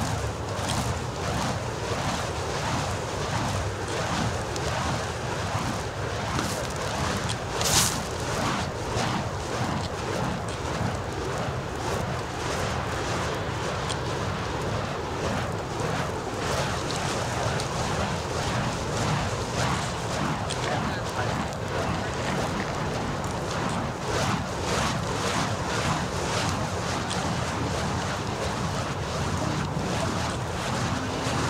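Burning snake fire poi wicks swung through the air, making repeated whooshes over a steady rushing noise, with one sharp loud burst about 8 seconds in.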